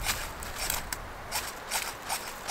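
Several short, sharp scrapes of a fire striker throwing sparks onto cotton-ball tinder, in an attempt to light a small fire.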